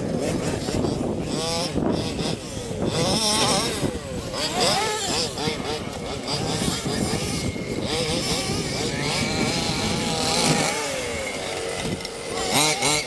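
Several radio-controlled cars running hard at once, their motors whining up and down in pitch as they are throttled on and off.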